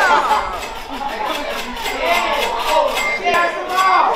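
Several people talking over one another in a crowded room, excited chatter and reactions with no single clear voice.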